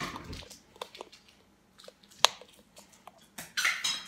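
Dishwasher door being opened and dishes handled in its rack: scattered light clicks and knocks, one sharp click about two seconds in, and a louder clatter of dishes near the end.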